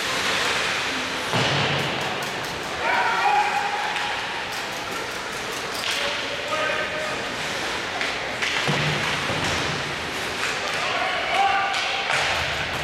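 Ice hockey game heard from the stands: several high-pitched voices calling out in short bursts over steady rink noise, with sharp clacks and thuds of sticks and puck striking the ice and boards.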